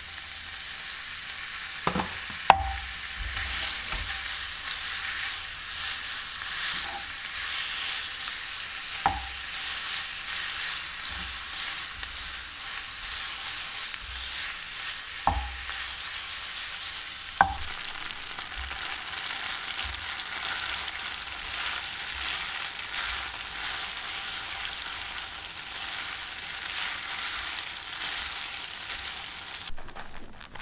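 Thin slices of meat sizzling steadily in hot olive oil with garlic in a non-stick frying pan. A wooden spatula knocks sharply against the pan about five times as the meat is turned.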